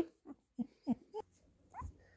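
Newborn labradoodle puppy giving a few short, faint squeaks and whimpers, a couple of them quick upward squeals.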